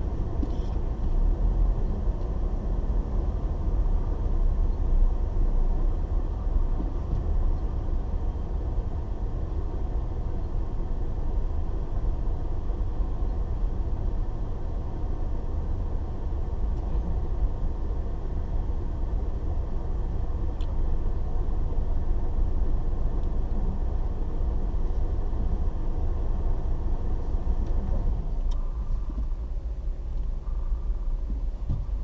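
Steady low rumble of a car's engine and road noise heard from inside the cabin as the car moves slowly in dense traffic.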